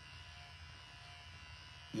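Faint, steady electrical buzz and hum in a pause between speech: the background noise of the recording.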